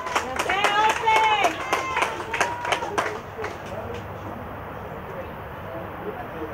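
High-pitched shouts and a run of sharp hand claps from people at a football pitch over the first three seconds, then it dies down to a faint steady background.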